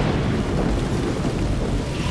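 Thunder rumbling over steady heavy rain.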